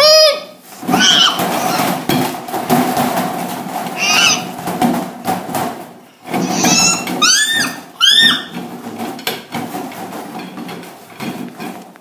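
A young child with tape over the mouth making muffled, high-pitched squeals and grunts through the tape, one sharp squeal at the start and several quick ones together about seven to eight seconds in. Rustling and handling noise runs underneath.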